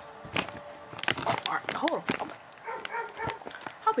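A pit bull barking repeatedly in the house.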